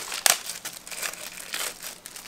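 Crackling, rustling handling noise of fishing tackle, a line and a small cork float, being worked in the hands, with a sharp click just after the start and irregular crinkling after it.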